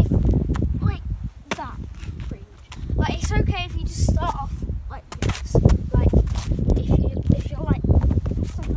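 Wind buffeting the microphone in strong, uneven gusts, with a few sharp cracks.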